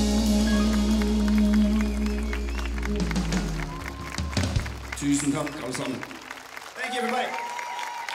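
A live band's final held chord, electric guitar over bass and keys, rings out and fades away in the first few seconds, followed by applause with voices.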